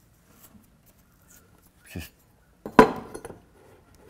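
A single sharp metallic clink of a metal hand tool with a brief ring, about three-quarters of the way through, followed by a couple of light ticks; before it, only faint handling of cotton in the seam.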